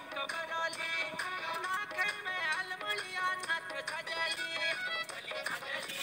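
A song playing: a sung melody over a steady beat.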